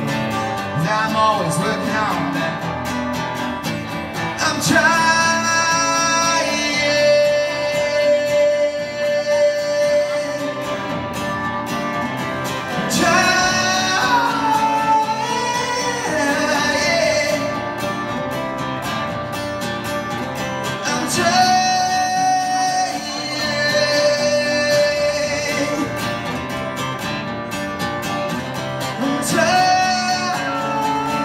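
Acoustic guitar playing with long, held sung notes over it, without words.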